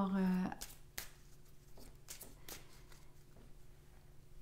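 Tarot deck being handled in the hands: a few soft, scattered clicks and rustles of the cards.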